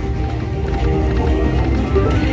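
Buffalo-themed video slot machine's music and reel-spin sound effects, steady and dense, while the reels spin during a free-spin bonus.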